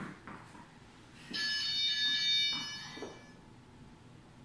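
An electronic interval-timer beep: one steady high-pitched tone about two seconds long, starting just over a second in, marking a change between work and rest intervals. A few faint soft thuds come before and after it.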